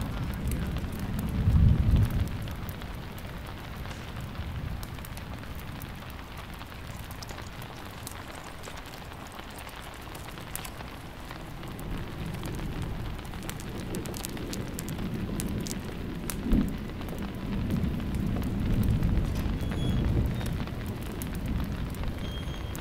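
Steady rain falling, with thunder rumbling. A loud low rumble comes about two seconds in, and a longer rolling rumble fills the second half, with a sharp crack partway through it.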